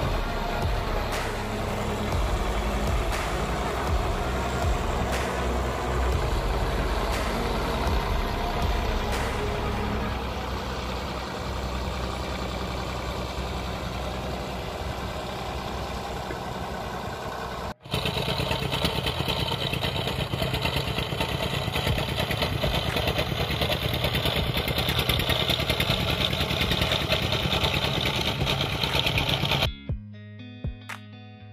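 Wooden fishing boat's inboard diesel engine running steadily with a low rumble, mixed with wind and water hiss. About 18 s in the sound cuts out for a moment and comes back louder and hissier.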